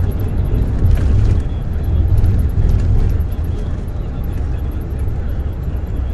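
Interior road noise of a moving bus: a loud, steady low rumble of engine and tyres heard from inside the cabin.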